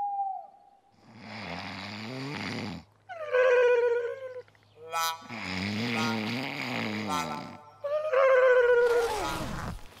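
Exaggerated comic snoring, twice over: a rasping snore on the in-breath, then a whistle that falls in pitch on the out-breath.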